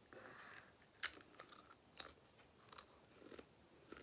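Someone chewing a crunchy potato crisp with the mouth close to the microphone: faint, with a few sharp crunches roughly a second apart.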